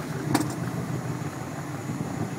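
Boat motor running steadily at low trolling speed, with one sharp knock about a third of a second in.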